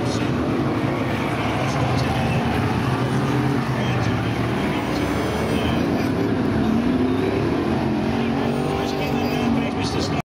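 BriSCA F1 stock cars' V8 engines running as the cars lap the shale oval, a steady engine din with notes rising and falling as cars pass and rev, most clearly in the second half.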